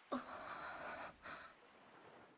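Faint, breathy sounds from a girl's voice: a short falling voiced note at the start, then a long breath, followed by a second, shorter breath a little after a second in.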